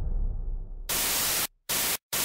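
Tail of a low, booming logo sting dying away, then bursts of TV-style white-noise static that switch on and off abruptly: two bursts, starting about a second in, separated by a short dead gap.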